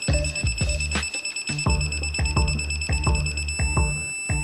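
Background music with a steady beat, over a continuous high-pitched electronic beep from a USAG 831 A digital angle meter, signalling that the set tightening angle has been reached.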